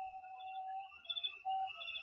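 Faint background music of soft, sustained electronic notes: one long note, then a shorter one about a second and a half in, over a steady higher tone.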